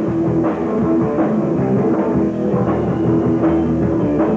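Hard rock band playing live: electric guitar, bass and drum kit in a steady loud groove, with sustained chords and a regular drum beat. The recording sounds dull, with little treble.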